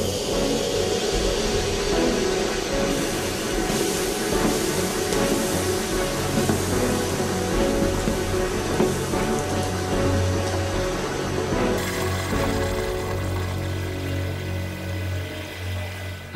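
Background music over a steady rushing hiss from concentrated hydrogen peroxide decomposing violently on potassium permanganate, venting steam and oxygen from a flask.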